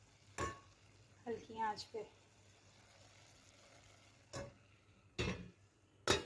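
A few sharp clinks and knocks of a lid against a stainless-steel cooking pot, about half a second in and twice more near the end, over a faint steady hiss.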